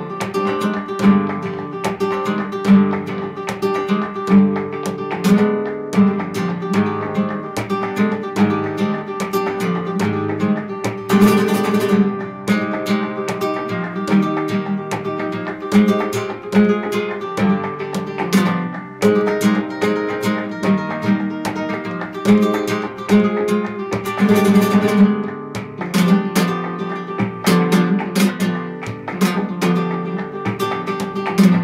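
Flamenco guitar with a capo playing a bulería falseta por arriba in E, a quick line of plucked notes broken by a few strummed chords, at about 11 and 24 seconds in.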